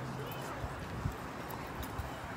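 Footsteps of boots on asphalt, a few separate footfalls, over faint, indistinct voices in the background.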